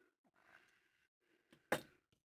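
Near silence with faint handling of yarn, then one short, sharp snip near the end: scissors cutting a length of yarn.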